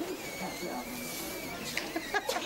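A man blowing by mouth into a sheep's windpipe to inflate its lungs: a steady breathy rush of air with a thin whistle for about a second.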